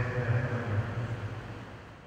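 Church congregation singing at mass, a dense blend of held notes fading out over the two seconds.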